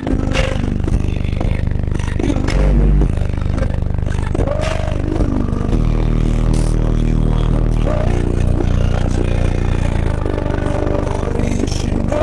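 Bass-heavy music played loud through a wall of four Sundown Audio ZV4 15-inch subwoofers. Deep sustained bass notes dominate, stepping to a new note every few seconds, with the rest of the song above them.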